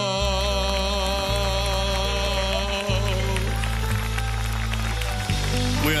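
A singer's last held note, with vibrato, ends about half a second in while a live band sustains the song's closing chords, the low notes shifting a few times. Applause from the audience runs under the music.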